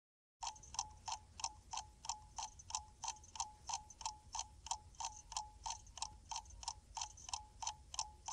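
Ticking sound effect under a countdown leader: short, even clock-like ticks, about three a second, each with a brief tone, starting about half a second in over a faint low hum.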